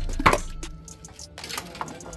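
Sharp clicks and knocks from hands handling a small plastic squeeze bottle and its cap. The loudest click comes just after the start, followed by a few softer ones.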